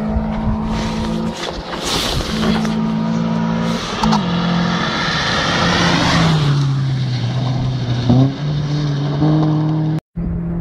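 Rally car's engine at high revs, changing gear several times as it comes down a gravel forest stage, with tyres and gravel loudest as it passes about six seconds in. The engine note drops as it goes by, then steps up with another gear change just after eight seconds.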